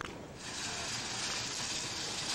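A sharp click, then a steady hiss that starts suddenly about half a second later and cuts off after about two seconds.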